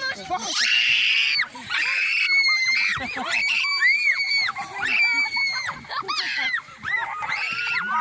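Several children shrieking and squealing in excitement, high overlapping screams that rise and fall in pitch, one after another through the whole stretch.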